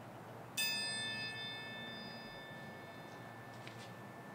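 A small bell struck once about half a second in, its clear, high ringing fading away over about three seconds: a single memorial toll after a name in the roll of the dead.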